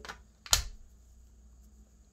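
A single sharp click about half a second in as a colouring pencil is handled, then only faint room tone.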